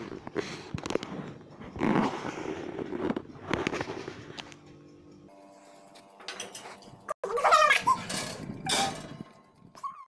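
Clattering and knocks of a glass baking dish being handled and set on the oven rack. These are followed by a few seconds of music with held notes and a short melodic phrase.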